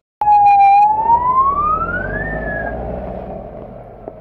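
Police vehicle siren: a brief stuttering tone, then one wail rising steadily in pitch, peaking a little past halfway and dying away.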